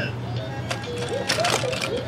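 Baby's electronic monkey-treehouse activity toy playing a short jingle of brief notes, with a few clicks from its moving parts as it is pushed.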